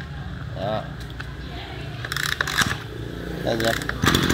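Small two-stroke air-cooled brush cutter engine idling steadily with the throttle released.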